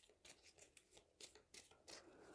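Faint, scattered soft ticks and rustles of a deck of oracle cards being shuffled by hand, the cards sliding and tapping against each other.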